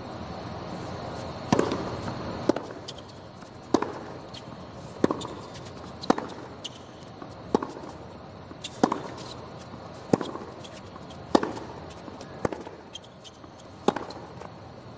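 Tennis ball struck by racquets in a rally: a serve about one and a half seconds in, then sharp hits roughly every second and a quarter, each followed by a short ring, with fainter ticks of the ball bouncing between some of them, over a steady background hiss.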